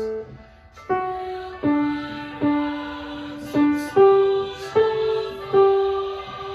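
Grand piano playing a slow single-note melody line, the alto part of a hymn anthem. After a brief pause near the start, a new note sounds about every three-quarters of a second, each left to ring and fade.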